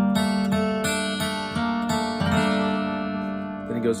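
Acoustic guitar, tuned down a whole step, strumming an A minor chord shape several times and letting it ring, slowly fading. A spoken word comes at the very end.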